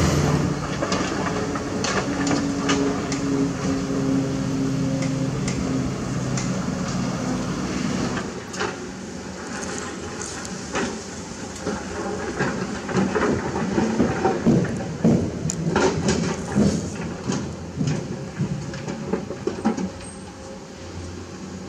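Excavator diesel engine running steadily for the first eight seconds or so. After that, a Komatsu PC200 excavator's steel bucket digs into rocky ground, with many irregular knocks, clatters and scrapes of stones against the bucket over a quieter engine.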